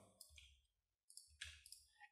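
Near silence with a few faint computer keyboard clicks as code is typed.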